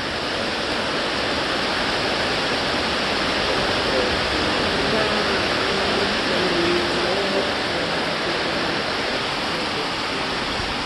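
Heavy rain falling, a steady, even hiss of downpour that does not let up.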